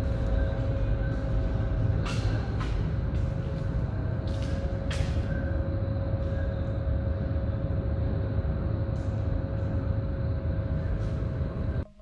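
Paint spray booth's ventilation running with a steady low rumble and hum, with a few short hisses of air. The sound cuts off abruptly near the end.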